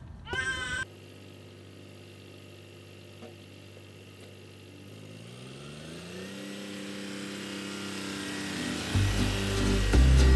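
Tractor engine running steadily, then revving up about halfway through and growing louder as the tractor comes closer. A loud low sound comes in near the end as music begins.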